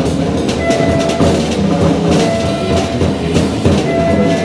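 Live jazz: a tenor saxophone sustains long held notes over busy drumming on a drum kit, with cymbals splashing through.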